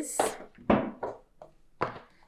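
A few short knocks and taps of a cardboard card-deck box being handled and set on a tabletop, about four in all, the loudest near the start and near the end.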